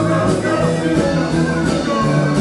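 Live rock and roll band playing, with electric guitar over a steady driving beat.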